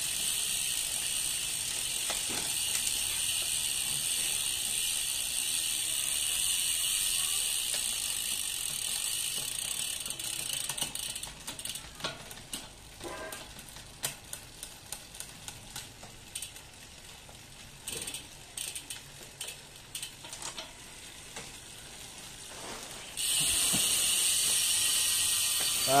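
Road-bike drivetrain with a Shimano 105 11-speed cassette and double chainring, run on a stand: the chain runs steadily over the sprockets while the rear wheel spins. About halfway through it gives way to a stretch of irregular clicking and ticking from the drivetrain. Near the end the steady running comes back.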